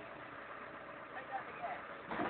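Manitou telehandler's diesel engine running faintly and steadily, heard as a low even noise.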